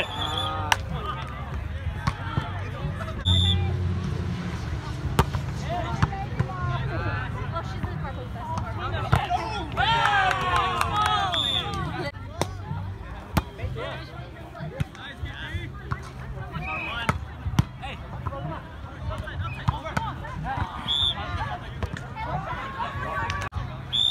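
Pickup volleyball rally: the ball is struck with sharp slaps at irregular intervals while several men shout and call out, loudest about halfway through, over a steady low rumble.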